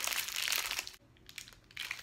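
Thin plastic sleeves around a bundle of makeup brushes crinkling as they are handled. The crinkling is dense for about a second, then drops to a few faint rustles.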